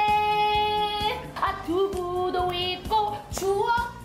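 A woman singing a short song over a backing track with a steady beat, holding one long note for about the first second before moving through shorter notes.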